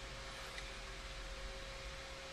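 Quiet background room tone: a steady hiss with a faint steady hum underneath.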